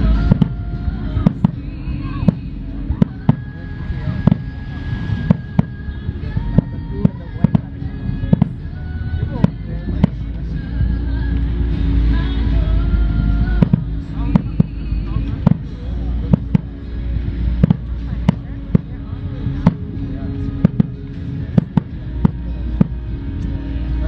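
Aerial fireworks shells bursting high overhead in quick, irregular succession, many sharp bangs often more than one a second. Music plays steadily underneath.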